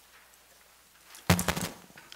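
Quiet room tone, then a sudden short burst of knocks and rustling on a microphone about a second in, like the mic being handled or bumped.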